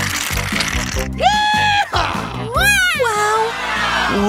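Aerosol whipped-cream cans hissing as cream is sprayed out, over background music. About a second in the spraying stops and two high, cat-like calls follow, the second wavering up and then down.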